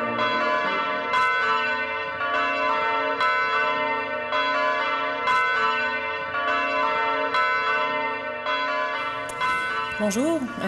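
Church bells rung by hand from ropes, several bells striking in turn about once a second, each stroke ringing on under the next.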